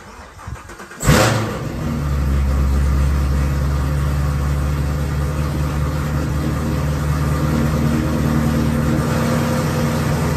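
Chevrolet Camaro's engine starting about a second in with a brief loud rev, then settling into a steady idle.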